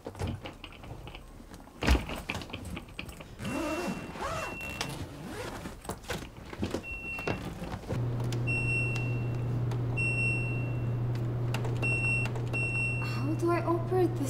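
Laundry machine control panel beeping as its buttons are pressed: short high beeps repeated at uneven intervals over a steady low machine hum that starts about 8 seconds in. A single sharp thump comes about 2 seconds in.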